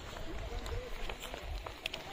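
Faint voices talking in the background over a low rumble of wind on the microphone, with light footsteps on pavement.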